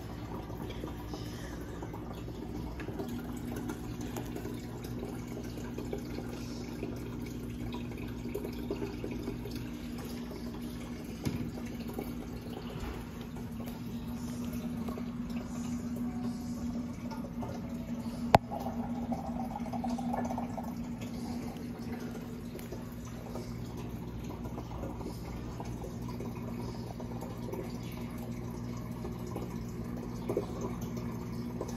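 Aquarium filter in a turtle tank running: a steady low hum with the sound of moving water. One sharp click about two-thirds of the way through.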